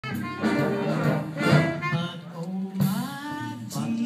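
Live concert music: a band with brass playing behind a singer, with held, wavering vocal notes.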